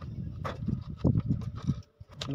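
Irregular soft hollow knocks and rustles of an empty plastic bottle being handled while thread is wound around a valve fitted through its side. The sound stops abruptly just before the end.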